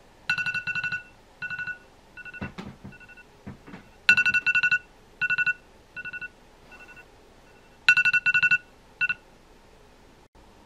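iPhone alarm ringing: groups of rapid high beeps, a loud group about every four seconds with fainter ones between, until it stops about nine seconds in. A few soft knocks and rustles of handling come between the first two loud groups.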